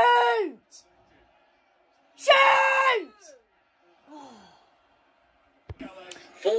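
A young man's drawn-out wordless groans of dismay, each sliding down in pitch: one trailing off at the start, a loud one about two seconds in, and a fainter one about four seconds in. There is a brief sharp click near the end.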